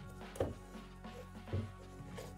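Quiet background music with steady held notes. Two soft knocks, about half a second and a second and a half in, come from the canvas high-top sneaker being handled on the table while a flat lace is pulled up through an eyelet.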